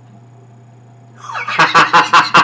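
A man laughing hard, breaking out about a second in as rapid loud pulses about five a second, after a quiet stretch with only a faint low hum.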